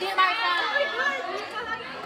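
Several young women's voices chattering over one another, words unclear.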